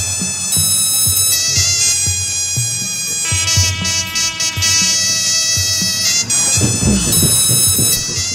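Burmese hsaing ensemble music: a high, reedy hne (double-reed shawm) melody held over repeated drum strokes from the drum circle.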